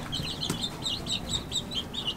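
A brood of about ten young Plymouth Rock, Rhode Island Red and Ameraucana chicks peeping continuously, many short high cheeps overlapping, with one light knock about a quarter of the way in.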